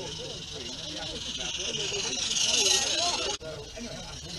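Steady hiss of a small live-steam garden-railway locomotive, swelling to its loudest about two-thirds of the way in and then cut off abruptly near the end.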